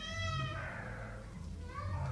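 A high-pitched animal call that falls slightly in pitch and fades within about a second, followed by a fainter, shorter call near the end.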